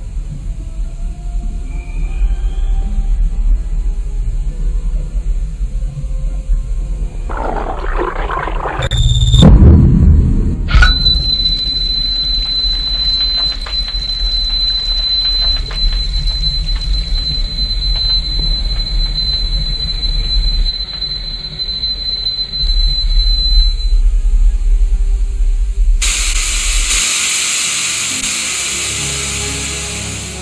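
Eerie horror-film soundtrack of a cursed videotape playing on a TV: a low rumble, a sudden loud burst about nine seconds in, then a long steady high-pitched whine, and a loud hiss near the end that fades out.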